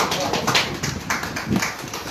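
A man's voice lecturing into a handheld microphone, with irregular sharp clicks and crackle over the voice.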